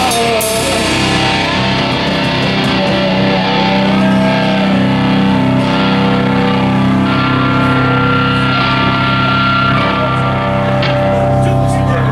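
Live metal band playing loudly: electric guitars and bass holding long sustained chords over drums, with a sung line just at the start.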